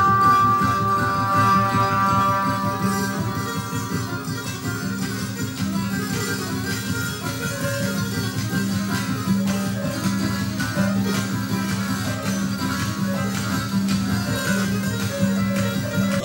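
Live jazz: a held flugelhorn note fades away over the first few seconds. A double bass then plucks a low figure that repeats in an even pulse, about one and a half notes a second, under lighter playing.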